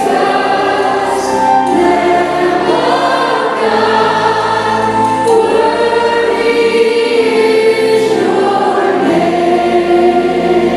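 A Christian worship song sung by a group of voices, led by a woman singing into a handheld microphone, with long held notes that change pitch every second or two over a musical accompaniment.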